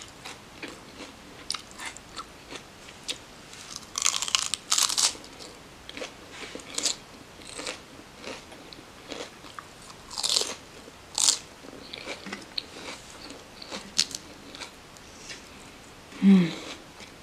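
Biting and chewing crisp lettuce leaf close to the microphone. Irregular wet crunches run throughout, with louder bursts of crunching about four to five and ten to eleven seconds in.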